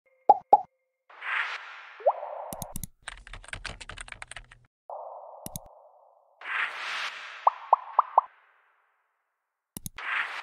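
User-interface sound effects: two quick pops, a whoosh with a rising blip, a fast run of keyboard typing clicks, a mouse click, then another whoosh with four quick pops and a click near the end.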